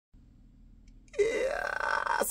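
A man's drawn-out vocal sound of about a second, starting just past halfway through and held at a fairly steady pitch.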